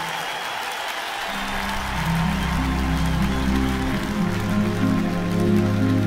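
Concert-hall applause dying away as a live orchestra begins the introduction, with sustained low chords coming in about a second in and holding steady.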